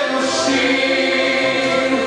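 A group of voices singing a slow Romanian Christian hymn together, with long held notes over musical accompaniment.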